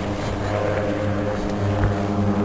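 A steady engine drone holding one even pitch.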